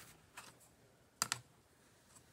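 Clear acrylic quilting ruler being set down on fabric over a cutting mat: a faint tap, then two quick light clicks a little over a second in.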